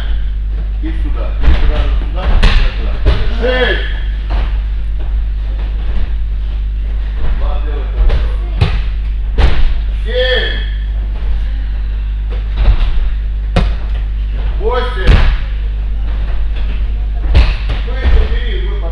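Bodies repeatedly falling onto gym mats during martial-arts throw practice, a dull thud every second or two, with voices calling across the hall over a steady low hum.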